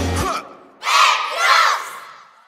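A drum-heavy backing track cuts off just after the start. About a second in, a group of children shout together twice, with an echo trailing off after the second shout.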